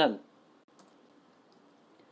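Near silence with a single faint click of a computer keyboard key about two-thirds of a second in, as code is typed into the editor.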